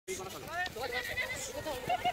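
Several people's voices calling out and laughing, high and wavering, overlapping one another.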